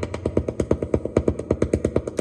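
Arturia MicroBrute analog synthesizer playing a fast, even run of short repeated notes with its filter turned well down, so the sound is muffled and the highs are cut away.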